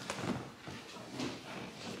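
Handling noise: soft rustling and a few light knocks as plastic feeding bottles are pushed into a chest-worn holder over a T-shirt.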